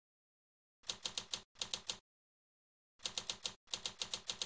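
Typewriter keys striking in quick runs of several keystrokes, starting about a second in, with a pause of about a second midway.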